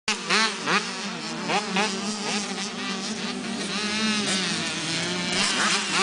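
Two-stroke 85cc motocross bikes racing, their high-pitched engines buzzing and revving up through the gears in repeated rising whines, several overlapping.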